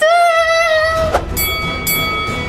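Intro sound-effect sting for a title card: a loud held note that falls slightly and cuts off about a second in, then a steady train-horn-like chord of high tones over a low rumble.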